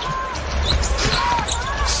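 Live basketball game sound on a hardwood court: the ball being dribbled, a few short squeaks, and a steady arena crowd rumble underneath.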